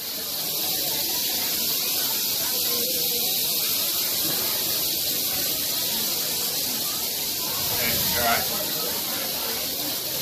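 Several rattlesnakes rattling their tails together: a steady, high, dry buzz that runs on without letting up.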